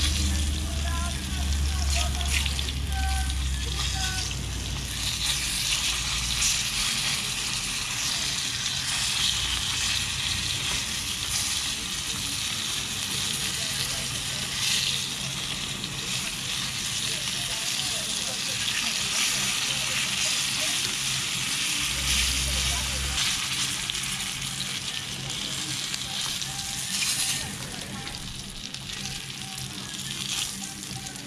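Battered fish fillets frying in hot oil in a pan, a steady sizzle with scattered crackles.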